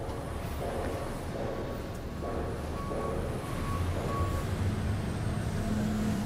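Steady low mechanical rumble with background noise, like vehicles running, and a short high beep repeated about five times at even intervals through the middle.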